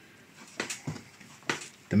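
Bread dough being kneaded by hand on a floured wooden chopping board: a few soft knocks and pats of the dough against the board, the loudest about one and a half seconds in.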